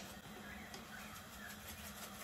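Hand pepper grinder being turned over a pot, giving a few faint, short crackles, over a steady low hum.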